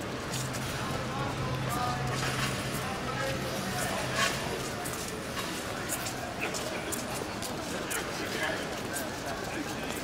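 Footsteps of a large crowd walking on stone paving: many overlapping clicking steps, with the indistinct chatter of many voices. A low steady hum sounds under it for the first few seconds.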